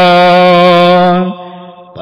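A man's voice chanting, holding one long steady note with a slight waver, which fades out about a second and a half in.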